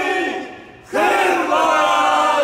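A small group of football fans singing a chant loudly together. They break off briefly about half a second in and come back in at full voice just before the one-second mark.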